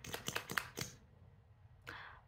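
A few small sharp clicks and scrapes in the first second from an e.l.f. Hydrating Camo Concealer tube being opened and its wand applicator pulled out of the plastic tube.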